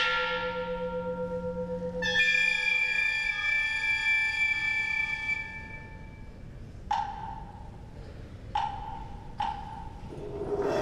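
Sparse struck mallet percussion in a Chinese orchestra, notes left to ring: a stroke at the start with a pulsing ring, a brighter metallic stroke about two seconds in that rings for about three seconds, then three short notes near the end.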